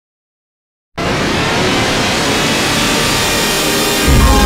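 Dead silence for about a second, then a loud, steady wash of harsh noise spread across all pitches.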